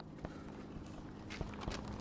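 Faint footsteps and shoe scuffs on an asphalt court, with a few light taps in the second half, over a low steady hum.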